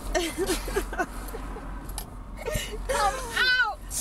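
Women laughing in short bursts, ending in a high-pitched squeal about three and a half seconds in.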